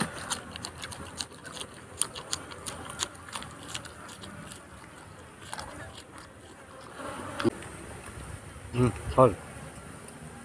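Crunchy chewing of a raw green vegetable close to the microphone: sharp crackles come fast for the first few seconds, then thin out. Under it runs a steady high-pitched buzz.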